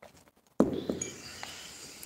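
White porcelain cup set down hard with a sharp clink just over half a second in, with a lighter knock right after. The china rings with high tones that fade out over a second or more.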